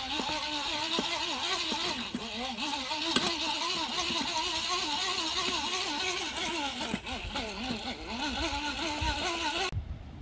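An engine running with a pitch that wavers up and down, with wind noise over it; it cuts off suddenly near the end.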